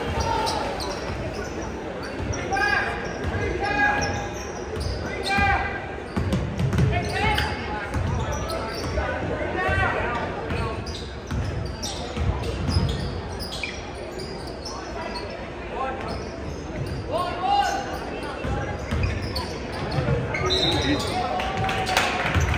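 Basketball being dribbled on a gym's hardwood court, the bounces coming in runs, with shouts and voices echoing around the hall.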